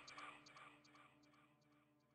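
The last repeats of a spoken producer tag fading away through an echo (delay) effect, each repeat fainter, dying out within the first second and leaving near silence.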